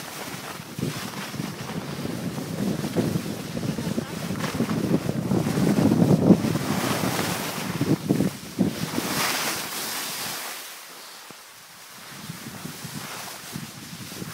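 Wind buffeting the microphone and skis hissing and scraping over snow during a downhill ski run. It eases off to a quieter stretch about ten seconds in, then picks up again.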